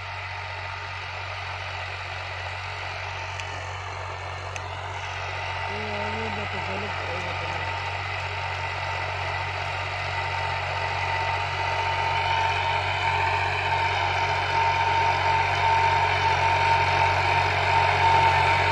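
Farm tractor engine running steadily under load while pulling a disc harrow through field stubble. It grows steadily louder as the tractor approaches.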